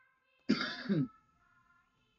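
A person clearing their throat once, a short rough burst in two quick pushes about half a second in, over faint sustained background tones.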